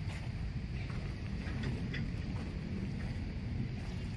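Steady low rumble of wind on the microphone at the shore, with a few faint scattered ticks of footsteps on crushed dolomite pebbles.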